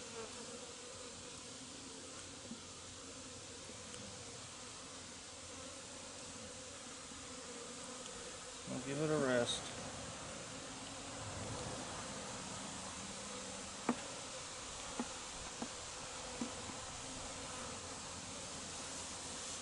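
Honey bees buzzing steadily around an opened top-bar hive, with one brief louder hum just before halfway. A few light wooden clicks in the last few seconds as the top bars are set into place.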